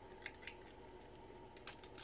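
Near silence with a few faint, light clicks of plastic action figures being handled.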